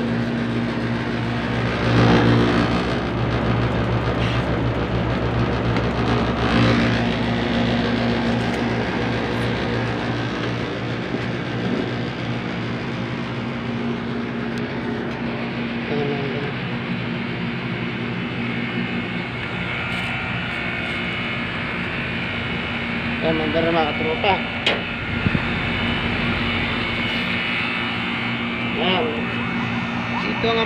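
Split-type air conditioner's outdoor condenser unit running with a steady low hum and fan whir, powered up again after a burnt wire at a loosened terminal clip was fixed, and drawing a current the technician counts as normal.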